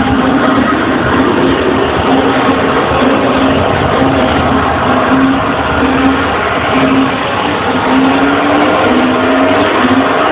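Loud electronic dance music from a DJ set, recorded on a low-quality device so it sounds dull and crowded; a short synth note repeats about twice a second and rises in pitch near the end.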